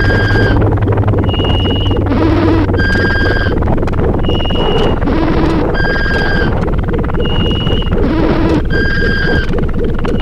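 Harsh noise electronic music: a dense, loud wall of noise with a looped pattern of short electronic beeps at several pitches, the loop repeating about every three seconds.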